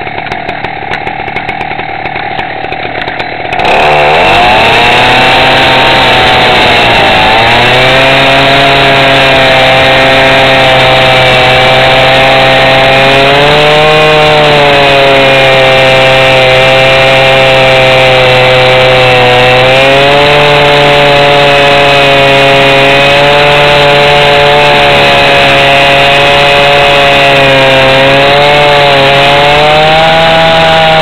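Petrol rail saw (a two-stroke abrasive disc cutter) cutting through a steel rail. It runs quieter for the first few seconds, then revs up hard about four seconds in and stays loud, the engine note sagging and recovering several times as the disc bites into the steel.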